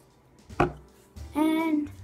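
A single sharp knock on the tabletop, likely the paint bottle being set down, followed about a second later by a drawn-out voice note held for just over half a second.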